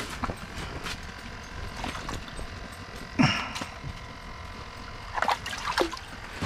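Water splashing and sloshing in an ice-fishing hole as a largemouth bass is hand-landed through the ice. There is a louder splash about three seconds in and a cluster of smaller splashes near the end.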